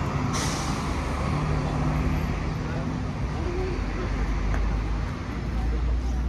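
City street ambience: a steady low rumble of traffic with indistinct voices, and a short hiss about a third of a second in.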